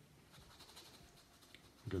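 Faint, soft strokes of a paintbrush rubbing paint onto the painting surface.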